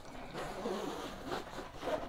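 Faint rustling and scraping of a polyester laptop backpack being handled, its fabric and zipper moving under the hands.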